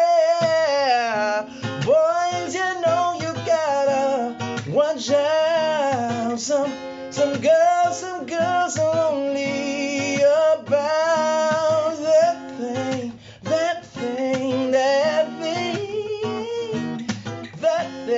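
Acoustic guitar strummed and picked, with a man singing a wavering, drawn-out melody over it.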